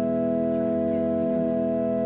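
Organ playing offertory music: slow, sustained chords, with a low note changing partway through.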